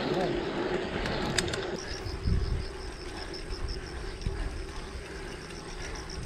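Wind rumble and tyre noise from a mountain bike rolling along a paved road. From about two seconds in, a faint high chirping repeats about five times a second.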